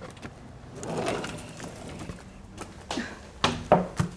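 Soft low call about a second in, then two sharp knocks near the end as a sliding patio door is handled on the way indoors.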